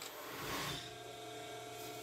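Faint steady room hum with quiet handling of thin wooden craft sticks as they are slid and grouped on a tabletop.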